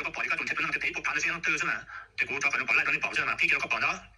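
Speech only: a voice talking steadily, with a short pause about halfway through.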